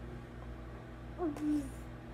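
A baby being spoon-fed gives one short cooing vocal sound about a second and a half in: a quick rise, then a lower note held for a moment.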